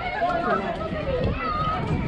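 Several high voices calling out and chattering over one another, with no clear words.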